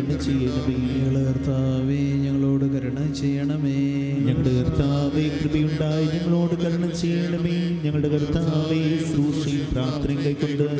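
Male clergy voices chanting the Syriac Orthodox evening prayer together in long held notes through microphones, over a sustained low keyboard accompaniment.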